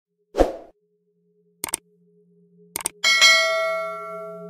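Subscribe-button animation sound effect: a low thud, then two quick double clicks, then a bright bell ding that rings on and slowly fades.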